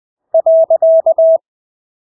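Morse code (CW) practice tone sent at 20 words per minute: a single mid-pitched beep keyed in six elements, dit-dah-dit-dah-dit-dah, the Morse full stop, starting about a third of a second in and lasting about a second.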